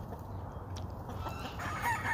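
A rooster crowing faintly in the distance over low background noise.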